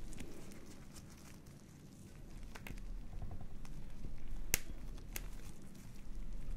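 Tissue rubbed over a silicone pimple-popping practice pad by nitrile-gloved hands: soft rubbing and crinkling with a low rumble and a few sharp clicks, the loudest about four and a half seconds in.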